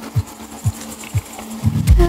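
Deep electronic dance music in a stripped-back passage: a kick drum beats about twice a second over a held low note. Near the end a heavy bass hit comes in as the full bass and chords return.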